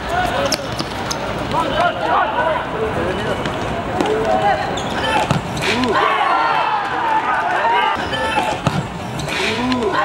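Players calling and shouting on a hard-surfaced football court, with a few sharp thuds of the ball being kicked and bouncing on the concrete.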